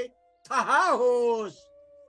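A man's single drawn-out vocal cry, its pitch rising and falling twice, in emotive Nepali recitation, over a soft held note of bansuri flute background music.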